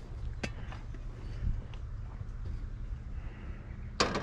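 Steady low outdoor rumble with one sharp click about half a second in and a few faint ticks, from a metal object being handled.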